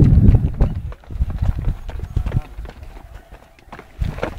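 Footsteps of a group climbing steps: irregular knocks and scuffs of shoes. Heavy low rumbling from wind or handling on the microphone in the first second.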